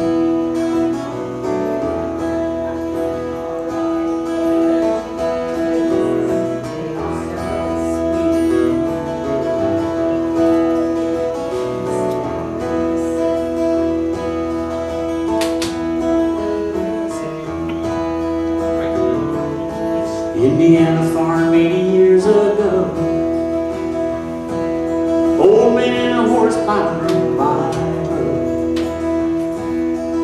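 Live acoustic folk band playing: a strummed acoustic guitar and an electric bass guitar start together in a steady instrumental intro, and singing comes in about twenty seconds in.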